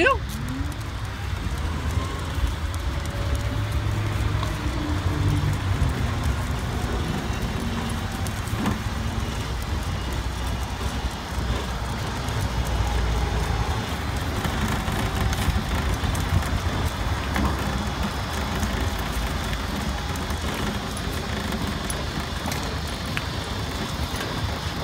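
Steady low rumble of a wheelchair rolling along a concrete footpath.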